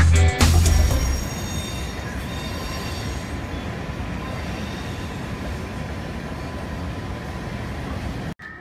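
Freight train of tank cars rolling along an elevated track: a steady rolling noise with a faint high squeal from the wheels in the first few seconds. The tail of loud music ends about a second in.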